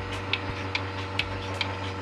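Electric bucket milking machine running: a steady motor hum from the vacuum pump under sharp, even pulsator clicks a little over twice a second.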